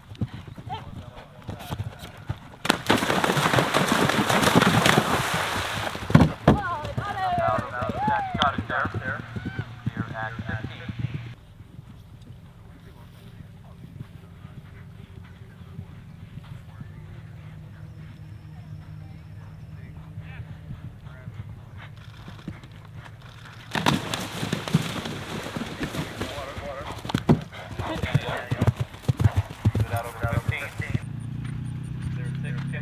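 Hoofbeats of event horses galloping on turf, with voices in the background and loud stretches of rushing noise near the start and near the end.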